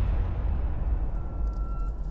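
A deep, steady low rumble. A vehicle's reversing beeper starts a little over a second in, giving one steady high beep of under a second.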